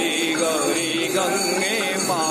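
A group of voices singing a devotional Hindu chant together, the melody rising and falling steadily.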